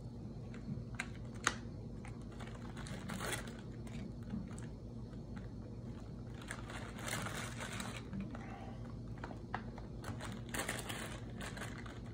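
Plastic graham-cracker sleeve crinkling, with scattered light clicks and taps as crackers are pulled out and laid down in a foil pan. A steady low hum runs underneath.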